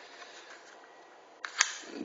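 Faint handling of a 3M DC2000 tape cartridge against the plastic tape drive, then a single sharp plastic click about one and a half seconds in.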